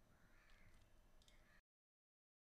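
Near silence: faint room tone from the recording, cutting off to dead silence about a second and a half in.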